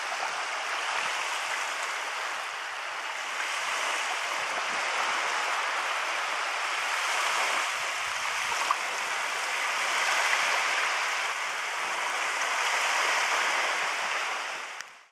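Small waves washing onto a sandy shore, a steady rushing hiss that swells and eases slowly.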